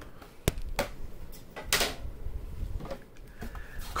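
A few sharp clicks and knocks of hard plastic graded-card slabs being handled, set down and picked up, with a brief louder scrape or rustle a little under two seconds in.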